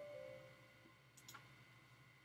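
Near silence, with a single faint computer mouse click a little over a second in. A faint short tone sounds right at the start.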